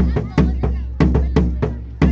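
Marching bass drum, lying flat on the ground, struck with mallets in a quick run of strokes, about two to three a second, each with a deep booming ring.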